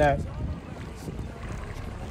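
Wind on the microphone: a steady low rumble with a soft hiss.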